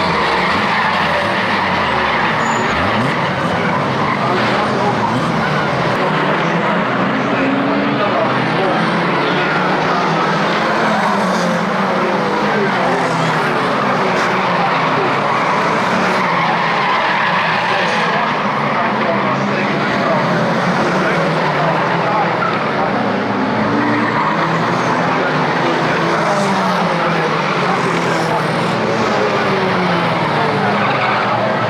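Several saloon stock car engines running together in a race, revving and easing off so that their pitches keep rising and falling, with tyres skidding.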